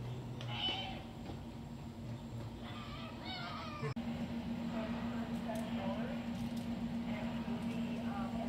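People's voices, one high-pitched and wavering a few seconds in, which a tagger mistakes for a cat's meow. After a brief dropout about halfway, a steady low hum sets in under quieter chatter.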